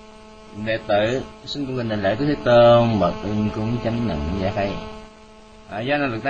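A man's voice in slow, drawn-out chanted recitation of a Buddhist homage, with long held notes, over a steady electrical mains hum from the sound system.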